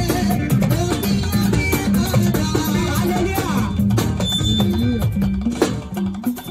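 Live gospel praise music from a band, drums and guitar playing a steady, upbeat dance rhythm over a bass line, with women singing into microphones.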